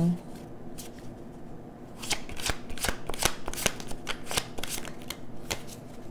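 A tarot deck being shuffled by hand: a few light card clicks at first, then a quick run of card snaps from about two seconds in until near the end.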